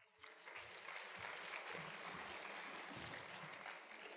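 Audience applauding: many hands clapping, building up in the first second, holding steady, then dying away near the end.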